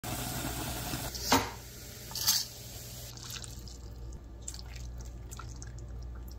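Liquid sounds from cooking instant ramen: water bubbling at first, two brief loud splashes about a second and two seconds in, then light dripping.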